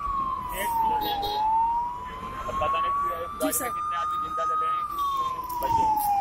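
Fire engine siren wailing: a single tone that drops quickly in the first second, climbs slowly back up over the next few seconds, then drops again near the end.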